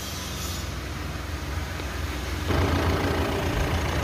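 Mitsubishi Pajero Sport's 2.4-litre diesel engine idling steadily just after being started, getting a little louder about two and a half seconds in.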